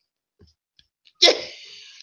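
After a second of near silence, a man lets out one sudden, sharp burst of breath, which trails off in a fading hiss.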